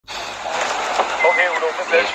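A person's voice saying a few words over a steady background hiss.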